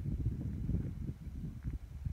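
Wind buffeting the microphone in uneven low rumbles.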